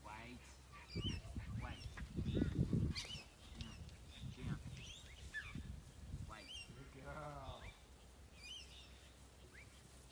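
Outdoor ambience of small birds chirping repeatedly, with a loud low rumble on the microphone from about one to three seconds in and a single honking animal call about seven seconds in.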